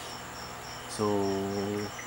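A cricket chirping in the background: a faint, high, evenly pulsing chirp of about four pulses a second. A drawn-out spoken 'So' comes over it in the second half.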